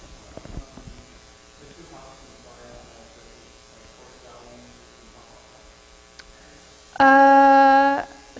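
Faint, distant voice speaking off the microphone, then near the end a loud, steady, buzzy held hum lasting about a second, a drawn-out "mmm" through the hall's PA.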